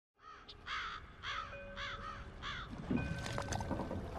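Seagulls crying: a series of about five short, arched calls roughly half a second apart. A low rumble builds under them in the last second or so.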